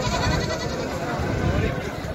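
Goats bleating, with people talking around them.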